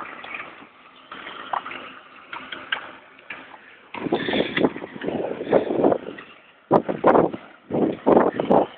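Irregular gusts of wind buffeting the microphone, loud low rumbling bursts starting about halfway through with brief breaks between them.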